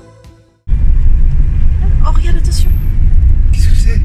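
Soft background music fades out. Less than a second in, a loud, steady low rumble from a moving car, heard inside the cabin, cuts in abruptly.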